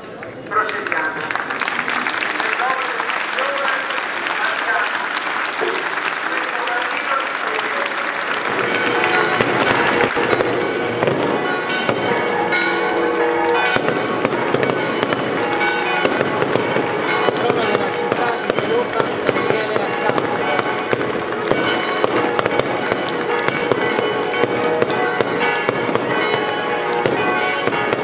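A dense barrage of firecrackers crackling without pause, starting suddenly about half a second in and growing heavier about eight seconds in, with bells ringing and voices underneath.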